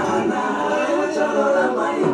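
Several voices singing together with no beat or bass behind them; the low end of the dance music drops out, and it comes back just after.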